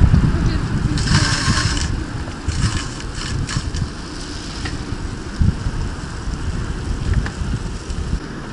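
Wind rumbling on the microphone of a camera riding on a moving bicycle, with a short hiss about a second in and a few light clicks a couple of seconds later.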